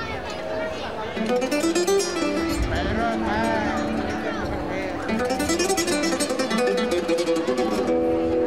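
Spanish guitar playing flamenco-style, with a voice singing long notes that glide up and down over it.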